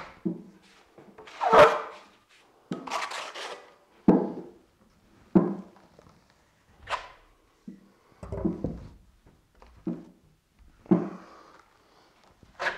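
Steel drywall trowel strokes spreading and scraping joint compound over a butt joint: a series of separate swipes against the drywall, roughly one every second or so.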